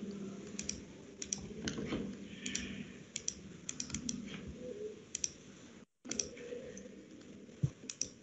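Irregular clicks of a computer mouse and keyboard, well over a dozen scattered through, some in quick runs. The audio cuts out for an instant just before the six-second mark.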